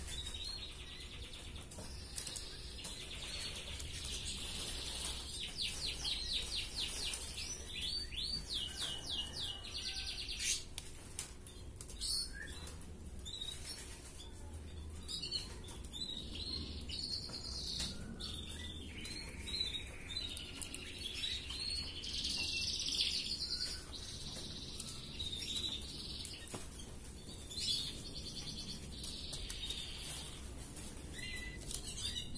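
Red canary in full song: a long trilling song made of runs of rapid repeated notes, with scattered sharp clicks.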